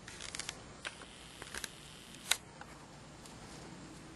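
Dry leaf litter crackling and rustling under a gray squirrel as it moves and scrabbles about: a run of short, crisp crackles with a few louder snaps, the loudest a little over two seconds in.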